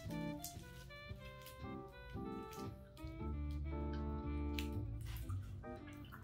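Background jazz music, held melodic notes over a steady low bass line.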